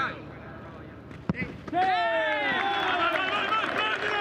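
A football struck once with a sharp knock about a second in, then several players shouting and yelling loudly in celebration of a goal, their voices rising and falling.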